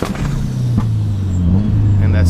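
Turbocharged KA24DE-T four-cylinder of a Nissan 240SX pulling at full throttle, heard from inside the cabin. Near the end the engine note drops to a lower steady pitch as the car is shifted up with the throttle held floored, a flat shift meant to keep the turbo spooled.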